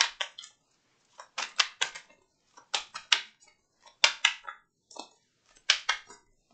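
A tarot deck being shuffled by hand: crisp card clicks and slaps in short clusters, about one cluster every second or so.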